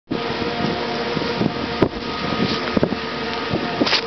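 Wind rushing over the camera microphone, with a faint steady hum underneath and a few sharp knocks, about one a second in the second half.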